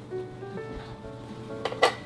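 Light background music, with two quick clinks of a metal spoon against a glass mixing bowl near the end.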